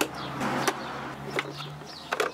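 Plastic fuse box cover in a car's engine bay being unclipped and lifted off, with a few sharp clicks from its latches over a light hiss.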